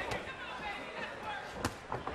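Two sharp boxing-glove punch impacts, about a second and a half apart, over the steady murmur of an arena crowd.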